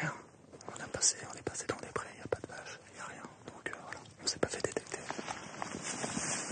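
Men whispering to each other, with scattered rustles and light knocks of equipment and dry leaves as they move and settle on the ground.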